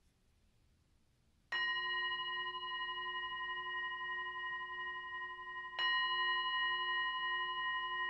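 Metal singing bowl held on the palm and struck twice with a mallet, about a second and a half in and again near six seconds, each strike ringing on in a steady tone with several overtones. It marks the close of the meditation.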